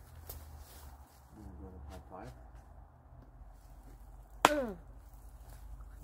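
A low steady rumble with faint, quiet voices, and one sharp knock about four and a half seconds in, followed at once by a short falling vocal exclamation.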